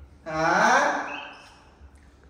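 A man's short, breathy gasp of an exclamation, rising in pitch and lasting under a second, then fading out.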